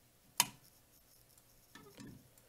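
A single sharp click about half a second in, from the small toggle switch inside an opened fire alarm pull station being flipped by hand to reset the station.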